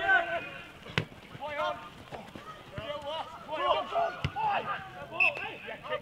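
Rugby league players shouting and calling to each other during play, the words unclear, with two sharp knocks, one about a second in and one just past four seconds.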